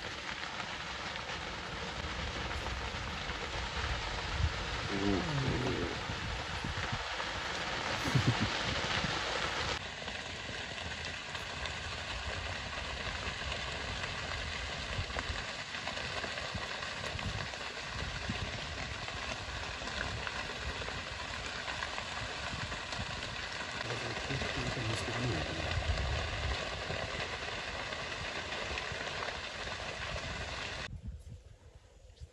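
Grass fire burning, a steady crackling hiss that is denser for the first ten seconds. Low voices murmur briefly about five seconds in and again near twenty-five seconds.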